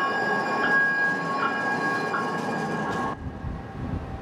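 TRAX light-rail train at a station platform: a steady high squeal over rolling rumble, with a short ding repeating a little more often than once a second. The sound cuts off abruptly about three seconds in.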